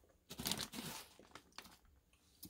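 Plastic snack bag crinkling as it is handled and set down on a counter, mostly in the first second, with a few small taps after.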